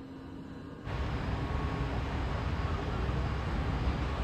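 London Underground Piccadilly line train heard from inside the carriage: a steady low rumble and hiss that starts abruptly about a second in, after faint platform ambience.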